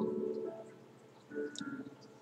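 A woman's closed-mouth "mmm" hum, held steady and fading about half a second in, then a second, shorter and fainter hum near the end.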